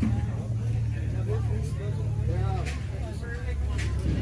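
Indistinct voices of people talking in the background, over a steady low rumble.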